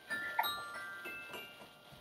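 A short bell-like ring of several high tones starting with a couple of soft knocks, fading away over about a second and a half.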